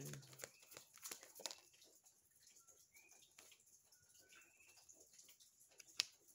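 Near silence with the faint sound of a tarot deck being shuffled by hand, soft rustles and taps mostly in the first second and a half. A few faint, short, high chirps come in the middle.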